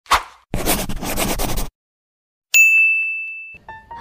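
Edited intro sound effects: a sharp hit, about a second of rapid noisy clatter, a short gap, then a single bright bell ding that rings down for about a second. Music begins just before the end.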